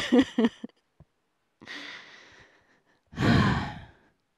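A woman's laugh trails off. She draws a soft breath in, then lets out a long, heavy sigh near the end.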